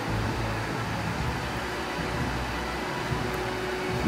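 Steady fan hum and hiss, with a faint steady tone joining about halfway through.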